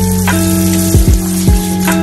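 Tap water pouring in a stream into a pot in a kitchen sink, turned off shortly before the end. Background music with a steady beat plays underneath.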